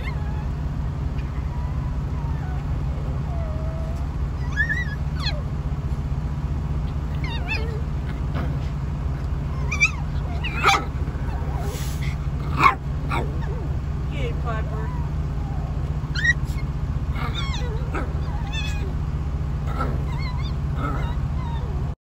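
A puppy whimpering and yipping in short, high cries scattered through, with a few sharp clicks around the middle, over a steady low hum.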